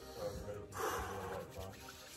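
A man breathing hard, with one sharp, loud breath about a second in, as he braces to step into an ice-cold stock-tank plunge. Faint voices are behind it.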